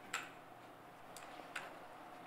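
Three short sharp clicks, the first and loudest right at the start, the others about a second and a second and a half in, over a faint steady room hum.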